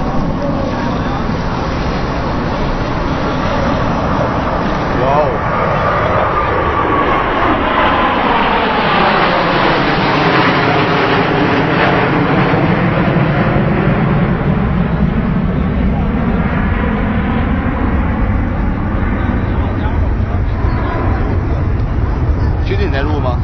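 Jet aircraft flying past, its noise swelling to a peak around the middle with a sweeping, phasing whoosh as it passes, then easing off while staying loud.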